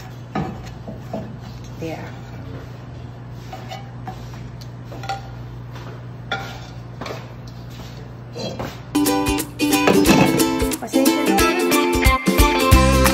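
Metal tongs clicking and scraping against a stainless-steel frying pan as halved pandesal rolls are turned while they toast, over a steady low hum. About nine seconds in, plucked-string background music comes in and is the loudest sound.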